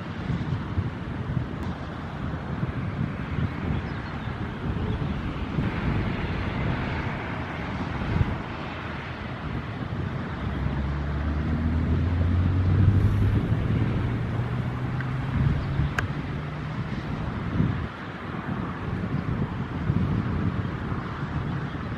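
Wind buffeting the microphone, a rough rumbling noise. In the second half a low, steady drone of several tones joins for about seven seconds.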